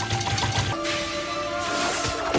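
Dramatic anime background music with held tones, overlaid by a rapid series of sharp hit sound effects.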